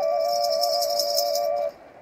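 Dvoyanka, a Bulgarian double flute, playing a steady drone on one pipe under a quick trilling melody on the other. A basket rattle and ankle bells are shaken in a fast rhythm alongside it. Both break off near the end for a short pause.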